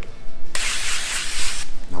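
Aerosol can of nonstick cooking spray sprayed into a glass baking dish: one steady hiss lasting about a second, starting about half a second in.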